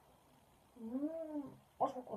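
A woman's closed-mouth "mmm" of enjoyment while chewing a cookie, one hum that rises and falls in pitch. Near the end a short click and brief vocal sounds.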